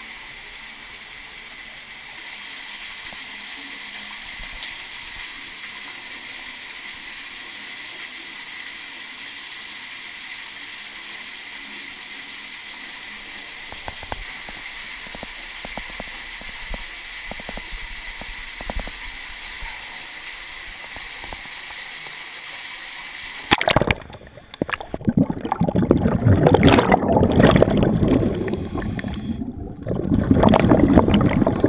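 Underwater in a flooded cave sump: a steady faint hiss with scattered small clicks. For the last six seconds or so, loud irregular gurgling bubbling follows, typical of a scuba regulator's exhaust bubbles as the diver breathes out.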